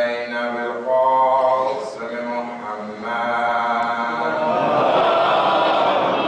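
A man's voice chanting in long, drawn-out notes; from about four seconds in, a mass of voices joins and carries on together.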